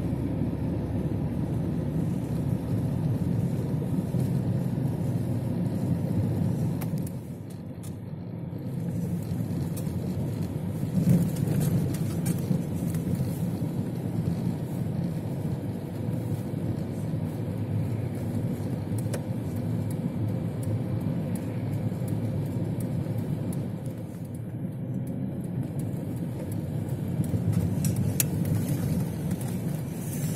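Steady engine and tyre noise of a car driving on a snowy street, heard from inside the cabin. The noise drops briefly about seven seconds in and again a little before the end.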